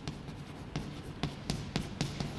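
Chalk writing on a blackboard: a run of short, irregular taps and scratches as letters are chalked.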